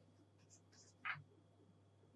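Faint scratching of a stylus writing a letter on a pen tablet: a few short strokes, the loudest about a second in, over a low steady hum.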